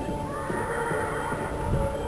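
A horse whinnying once, starting about a third of a second in and lasting about a second, over a steady high-pitched hum.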